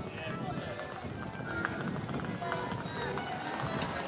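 Footsteps on stone paving, with people's voices and music in the background.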